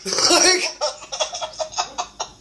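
Two women laughing together: a loud burst of laughter at first, then a run of short laughs that grows quieter.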